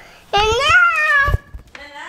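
A young child's wordless vocal sound: one drawn-out, high-pitched call about a second long that rises and then falls in pitch, with another beginning near the end.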